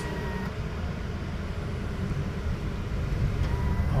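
Car engine and road noise heard from inside the cabin: a steady low rumble as the car pulls away through a toll gate onto the road.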